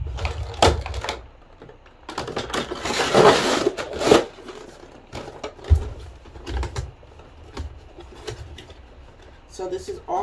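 A cardboard box being handled and opened by hand: scattered knocks and taps, with a longer scraping rustle about three seconds in and a couple of dull thumps in the middle. A voice begins just before the end.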